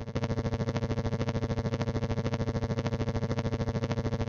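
Bluetooth audio dropout from the Fodsports FX8 Air helmet intercom feeding a GoPro Hero 12: the rider's voice is replaced by a steady, rapidly pulsing electronic buzz of about fourteen pulses a second. It is the wireless audio link glitching and going weird.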